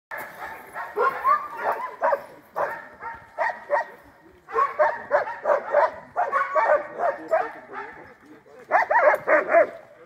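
A pack of sled dogs barking and yipping in rapid, overlapping bursts, with a loud flurry near the end.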